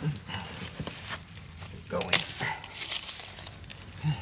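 Dry leaf litter and twigs rustling and crackling under a person crawling on hands and knees, in scattered short crackles, with a louder crack about halfway through.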